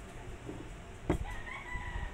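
A single knock about a second in, as a glass mug is set down on a table, followed by a rooster crowing: one drawn-out call.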